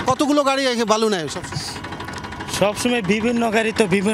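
Men talking, with a tractor engine running underneath the voices.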